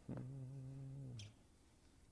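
A man humming one steady low note that stops about a second and a half in, with a faint click near the end of the note.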